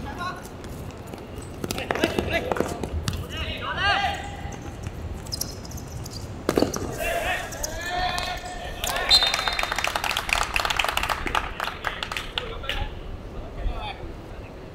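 Players shouting to each other during a five-a-side football game on a hard court, with sharp thuds of the ball being kicked, the clearest about two seconds in and again past the middle.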